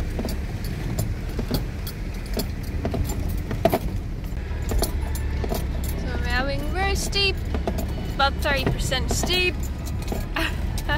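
Inside a 4x4's cab crawling over a rough, rocky track: a low, steady engine drone with frequent knocks and rattles as the vehicle jolts over stones. A voice sounds briefly about six seconds in and again around eight seconds.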